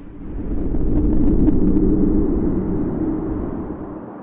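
Deep rumble of a demolished building's collapse and debris, swelling up about half a second in and slowly fading over the next few seconds.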